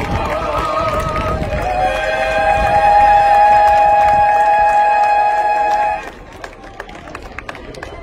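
High-school a cappella vocal group singing in harmony, moving into a long held chord that cuts off cleanly about six seconds in, after which only faint outdoor noise remains.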